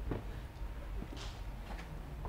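Quiet room tone: a low steady hum, with a faint brief hiss a little over a second in.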